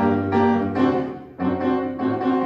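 A hymn played on piano, a phrase of held chords with a short break about one and a half seconds in.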